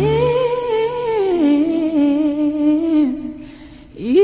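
Music: a solo voice humming a slow melody, sliding up into the first note, stepping down to a lower note about a second and a half in, and fading out near the end.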